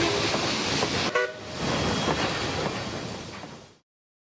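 Intro sound effect: a rushing wash of noise that fades away to silence, with a short horn-like toot about a second in.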